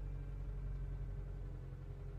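Low, steady hum inside a parked car's cabin.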